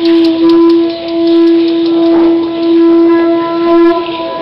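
Conch shell trumpet blown in a long, loud, steady blast on one pitch, dipping briefly about a second in.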